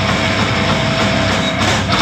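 Metalcore band playing live: loud distorted electric guitars and bass hold a dense, sustained wall of sound with a steady ringing tone, the vocals silent.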